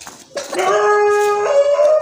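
An animal's long drawn-out call, about a second and a half, holding one pitch and then stepping up to a higher one near the end.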